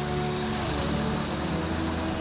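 Street traffic of buses, cars and motorcycles passing, mixed with soft background music that holds long steady tones.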